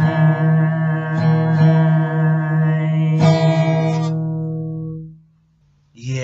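Acoustic guitar strummed a few times, its chords ringing on and then fading out about five seconds in.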